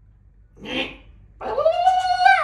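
A man's voice making a silly animal-like noise: a short breathy huff, then one long high falsetto call that rises, holds for about a second and drops away.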